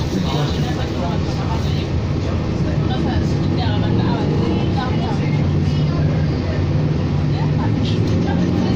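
Diesel engine of a 2007 New Flyer D40LFR city bus idling at a stop, a steady low hum heard from inside the passenger cabin, with faint voices of passengers in the background.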